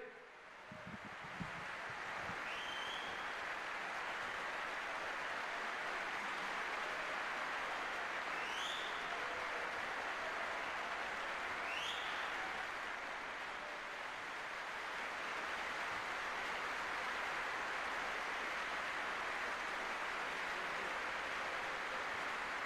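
Steady crowd applause with a few short rising whistles.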